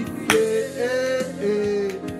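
A man singing a worship song in long held notes over accompanying music, with one sharp knock about a third of a second in.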